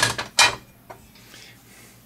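Hinged cover of an air-conditioner disconnect box being flipped open: two sharp clacks about half a second apart, then a faint tick.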